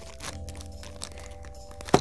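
Scissors cutting into a thin plastic packaging bag: faint snips and rustling of the plastic, with one sharp snip just before the end.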